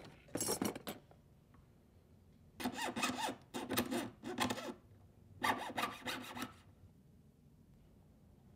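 A jeweler's saw cutting lightweight metal tubing held on a wooden bench pin: short back-and-forth rasping strokes in three runs, with pauses between them.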